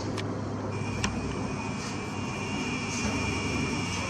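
Nikon Coolpix P900's zoom lens motor whining steadily, starting just under a second in, over a steady low rumble. Two sharp clicks come near the start and about a second in.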